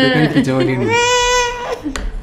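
A baby crying: one long, high-pitched wail lasting most of a second, about a second in, after a stretch of low adult voice.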